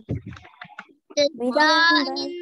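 Children's voices reading a text aloud together in a drawn-out, sing-song way, after a short low muffled noise at the start.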